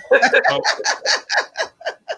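Hearty laughter in quick repeated bursts, about seven a second, that space out and fade near the end.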